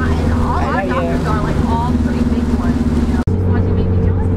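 Steady low hum with indistinct voices over it; just after three seconds the sound cuts off abruptly and a different steady hum takes over.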